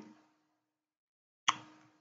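Dead silence between spoken sentences, broken about one and a half seconds in by one short sharp click.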